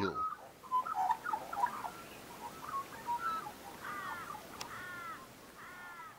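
Australian magpie calling: a loose run of short fluting, warbled notes, then three fuller curving calls about a second apart near the end.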